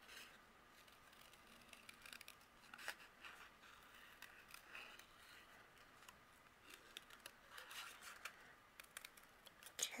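Small scissors making faint, irregular snips through white cardstock while fussy cutting around the curves of a stamped word, with the paper turned between cuts.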